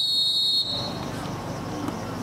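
A referee's whistle blown once: a single steady high note that cuts off sharply after well under a second.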